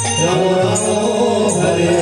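Bengali kirtan: a man singing a devotional chant, accompanied by khol drums. Drum strokes fall about every three-quarters of a second under the voice.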